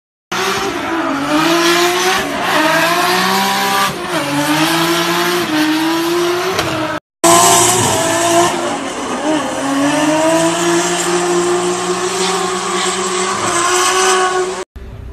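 Drift car engine revving hard while the car slides, its pitch rising and falling as the throttle is worked, with tyres squealing. The sound cuts out briefly about seven seconds in and then resumes the same way.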